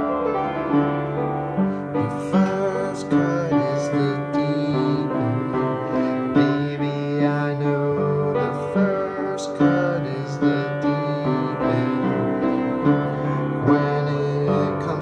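Piano-sounding keyboard music playing an instrumental passage of a slow pop song: held chords with a melody line over them, without singing.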